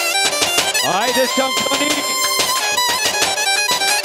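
Live Balkan Roma dance music (kyuchek) over a steady drum beat; about a second in, the lead melody slides upward into a long held note.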